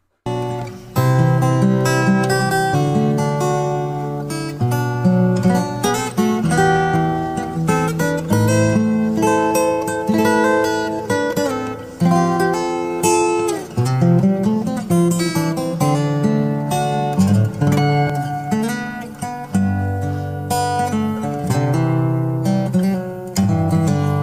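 Fingerstyle playing on a Cort cutaway acoustic guitar: a slow melody of plucked notes over deep bass notes and chords, played without a break.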